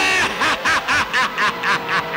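A man laughing in a rapid string of short bursts, about six a second.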